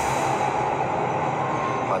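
A steady rushing noise, even and unbroken, with no speech in it.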